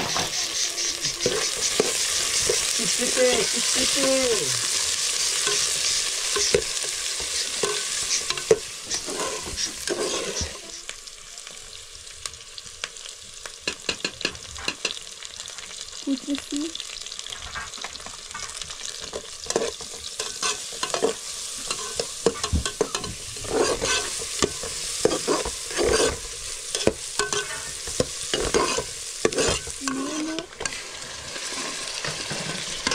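Diced onions frying in a steel pot: a loud sizzle for the first ten seconds or so that then settles lower, with a metal ladle stirring and clinking against the pot through the second half.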